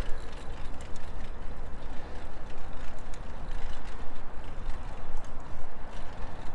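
Riding noise from a hybrid bicycle on a paved path: wind rumbling on a clip-on microphone in a furry windscreen, tyre noise, and faint ticking from the bike, which is due for a tune-up and chain and derailleur adjustment.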